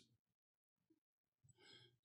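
Near silence, with a faint breath near the end.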